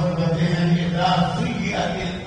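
A man's voice chanting a recitation in the melodic style of Quran recitation within a sermon. It holds one long steady note, then moves to a slightly higher phrase.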